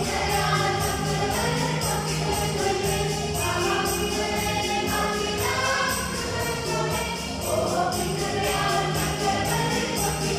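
A mixed choir of women, girls and men singing a Malayalam Christmas carol together over a steady beat.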